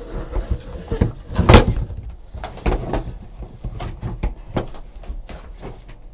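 Cardboard hobby boxes knocking and scraping as they are slid out of a cardboard shipping case and stacked on a table: a run of irregular knocks, the loudest about a second and a half in.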